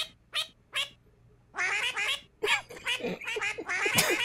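White domestic duck quacking repeatedly in short nasal calls: three quick quacks, a pause of about half a second, then a longer quack followed by a faster run of short ones.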